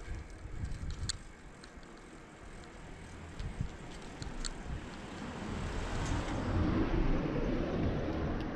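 Riding noise of a bicycle picked up by an action camera mounted on it: a hissing rush of wind and tyre noise with a few sharp clicks and rattles, growing louder over the last few seconds.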